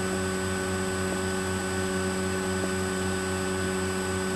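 Steady electrical mains hum with background hiss, with two faint ticks.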